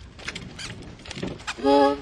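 Home-video sound of scattered rustles and clicks, then a voice calls out loudly for about half a second near the end.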